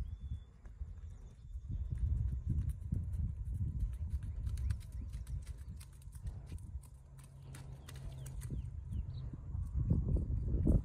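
A horse's hoofbeats on soft sand arena footing, irregular and muffled, under a low rumble.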